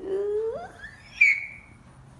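A single voice-like cry that climbs steadily in pitch from low to a shrill, loud peak about a second in, then trails off.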